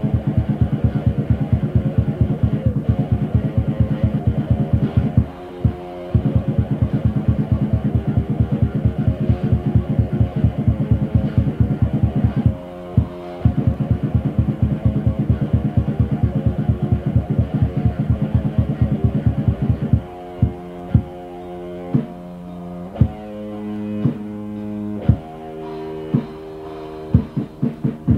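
Raw, muffled death metal demo recording with distorted electric guitar, bass and drum kit playing a fast, steady pounding rhythm, briefly broken twice. About three-quarters of the way through it changes to slower, spaced chord hits with ringing notes.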